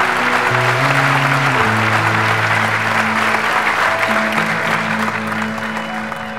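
An audience applauding over background music of steady held low notes. The clapping thins toward the end.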